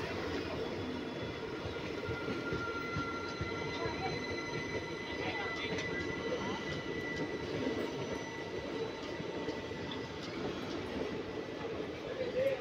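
Indian Railways AC three-tier passenger coaches rolling past at moderate speed: a continuous rumble of steel wheels on the rails, with thin high wheel squeals that come and go.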